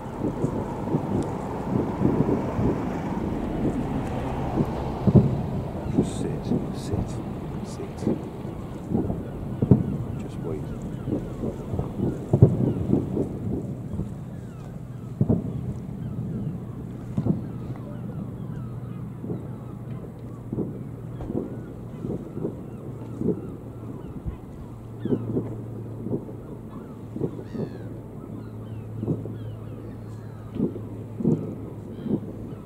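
Distant fireworks going off: a long run of irregular dull booms and thumps, at times several a second, some much louder than others. A low steady hum runs underneath, stronger in the second half.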